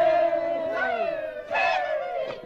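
A group of voices crying out together in one long, slowly falling call, with fresh shouts joining about a third of the way in and again near the end. These are recorded voices from the tape part of the symphony.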